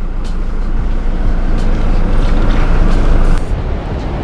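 Steady motor-vehicle rumble with heavy low end. It builds over a second or so and cuts off sharply a little before the end.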